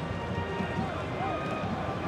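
Football TV broadcast sound: a match commentator's voice, faint here, between calls, over the steady background noise of the ground.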